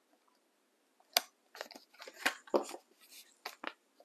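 Cardstock cards being handled and pressed together on a table: a string of crisp paper crackles and taps starting about a second in.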